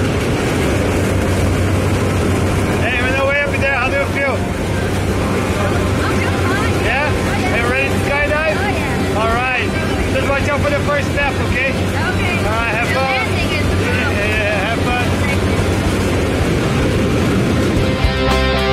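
Steady drone of a small jump plane's engine and propeller heard from inside the cabin in flight, with wind buffeting the microphone. Raised voices talk over the drone from about three seconds in until about fifteen seconds in.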